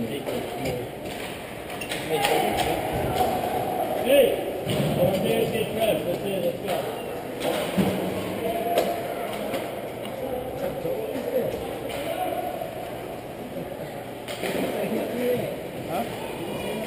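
Indistinct voices talking in the echoing hall of an ice rink, with a few sharp knocks from hockey play on the ice.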